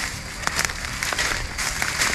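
Footsteps crunching through dry leaf litter, bark strips and twigs, with irregular snaps and rustles of the debris underfoot.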